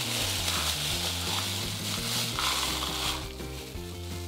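Clear plastic bag crinkling as dry akadama soil granules are tipped out of it into a plastic plant-pot saucer, a rustling, trickling hiss that stops about three seconds in.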